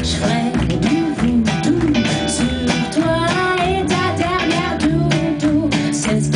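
A live band playing: strummed acoustic guitar, electric guitar, bass, keyboards and drums, with a melody line on top that wavers and bends in pitch.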